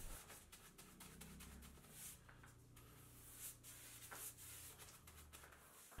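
Near silence, with faint scratchy strokes of a paintbrush brushing liquid waterproofing primer onto a wall over a low steady hum.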